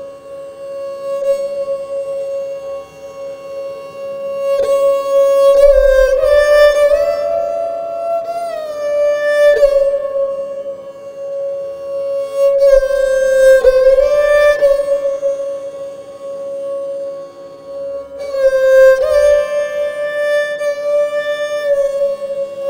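Esraj, a bowed Indian string instrument, playing a slow unaccompanied aalap in Raag Puriya Dhanashri: long held notes joined by slides up and down in pitch.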